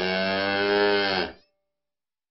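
A cow's moo as a sound effect: one long, low call that cuts off abruptly about a second and a half in.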